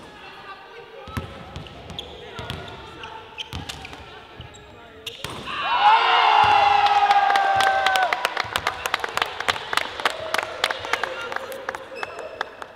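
A basketball bouncing a few times on a hardwood court, then players shouting and cheering, with one long held yell. Quick, even hand claps follow.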